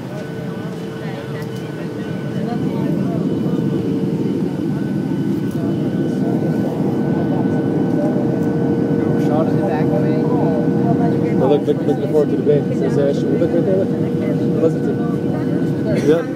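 Cabin noise inside a Southwest Airlines Boeing 737 on its descent: a steady rush of airflow and jet engine noise with a steady whine. It grows louder about two seconds in, and faint voices come through in the second half.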